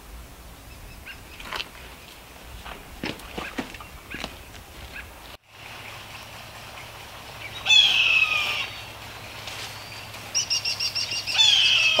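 Songbirds calling outdoors: a loud burst of high chirping about eight seconds in, then a quick run of repeated high notes near the end, over faint scattered ticks.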